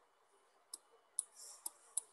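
Faint, sharp clicks of a computer mouse, four of them roughly half a second apart, as the whiteboard canvas is scrolled.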